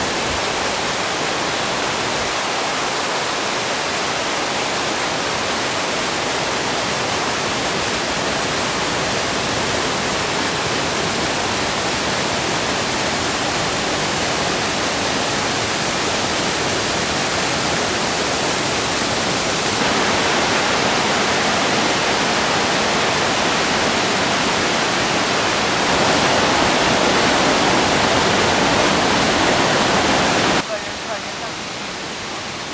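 Small forest waterfalls and cascades pouring over rocks: a steady rushing of water that gets louder twice, about two-thirds of the way through and again near the end.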